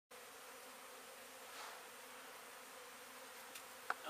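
Honey bees buzzing, a faint steady hum from a colony crawling over an open hive box. A single sharp click comes near the end.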